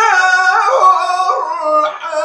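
A man chanting melodic Quran recitation: one long drawn-out, ornamented phrase that rises at first and then wavers downward, with a brief break near the end.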